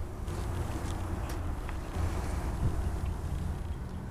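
Steady low rumble with a faint hiss inside a parked minivan's cabin, with a few faint clicks and rustles.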